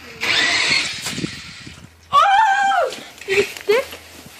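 A short burst of noise as a toy RC monster truck is launched off a ledge, then a loud, high-pitched shout and two short excited cries from the kids watching the jump.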